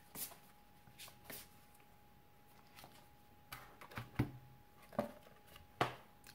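Oracle cards being handled and a card drawn from the deck: soft, scattered card taps and slides, a few a second at most, with a faint steady tone underneath.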